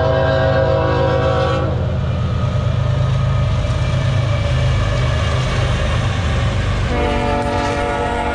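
Freight train's diesel locomotives passing with a steady low rumble. The locomotive horn sounds a chord for about two seconds at the start, and again near the end.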